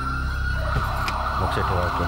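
Police siren sounding: a high steady tone that thickens into a rough, dense wail about a third of the way in, over a low sustained drone.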